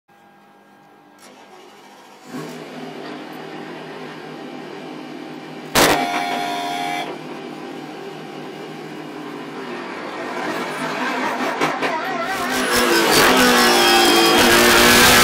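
BMW Z4 GT3 race car's engine idling steadily, growing louder about two seconds in. A sudden loud burst comes about six seconds in and lasts about a second. Music fades in toward the end.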